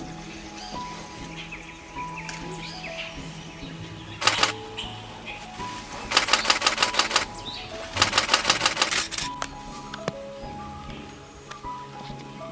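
Camera shutters firing in rapid bursts of about ten frames a second: a short burst a little over four seconds in, then two longer bursts of about a second each. Soft background music with held notes plays underneath.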